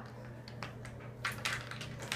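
Scattered light clicks and rattles from a baby's doorway jumper as the baby bounces, the toys on its tray knocking about, with several taps close together in the second second.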